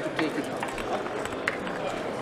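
Indistinct voices of several people talking in a busy room, with two light clicks, about a quarter second in and about a second and a half in.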